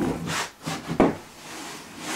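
Handling noise from an air hose being picked up: rubbing and light knocks, with a sharp knock about a second in and a softer rustle after it.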